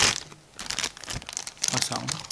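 Clear plastic packaging bag crinkling as it is handled, in short irregular crackles.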